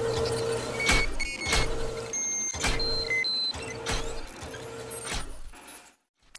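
Electronic intro sound effects: a low humming tone that pulses about every two-thirds of a second, with short high computer-style beeps and sharp clicks over it, fading out near the end.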